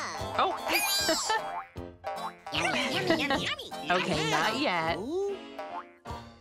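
Cartoon character voices chattering in high, squeaky wordless babble, with springy boing effects, over light children's background music.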